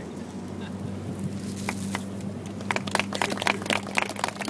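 A steady low hum, joined about two-thirds of the way in by a run of quick, sharp crackles and claps.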